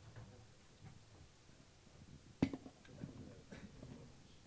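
Quiet room tone with faint shuffling and one sharp knock about two and a half seconds in, from a microphone and its stand being handled.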